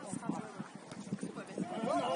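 Football match on artificial turf: faint players' voices with scattered soft thuds of feet and ball, the voices growing louder near the end.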